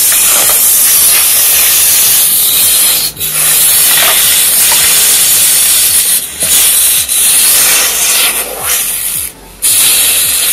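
Heated knife blade hissing and sizzling as it melts its way through a block of ice, with brief breaks a few times and a longer one near the end.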